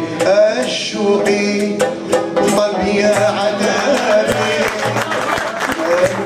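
Live Algerian ensemble music: a male voice singing over a plucked lute, violins and hand drums, the drum strokes keeping a steady beat.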